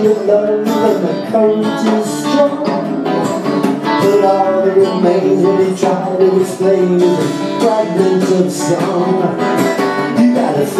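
A small live band playing: electric guitar and a second guitar over a drum kit keeping a steady beat with drum and cymbal hits.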